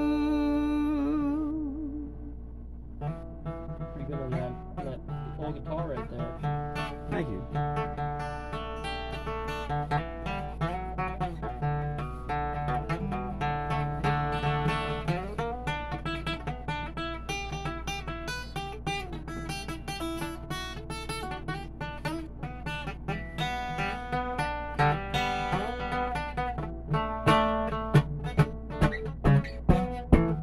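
Acoustic guitar playing an instrumental break between verses of a folk song, with picked notes over chords. A held sung note with vibrato fades out at the start, and a steady low hum runs underneath.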